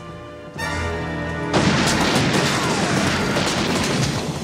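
Dramatic film-score music, then from about a second and a half in a long, dense volley of gunfire that drowns the music.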